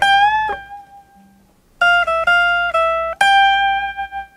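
Guitar playing a single-note lead line high on the neck. A note bent upward is held and fades, and after a pause comes a quick run of four notes, then a final high note left ringing.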